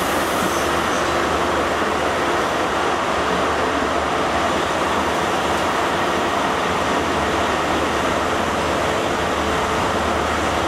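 InterCity 125 High Speed Train pulling slowly away from a station: a steady drone of its diesel power car engines mixed with running noise, heard from an open carriage window.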